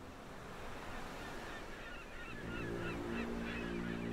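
Seashore ambience: a steady rushing wash with birds calling in short chirps from about halfway. A low held chord comes in about two and a half seconds in.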